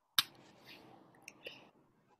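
A microphone opening on a video call: one sharp click, followed by faint room noise with a small click and a couple of soft sounds.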